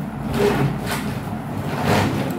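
A fabric bag being pulled out and handled: a few brief rustling swishes and scrapes.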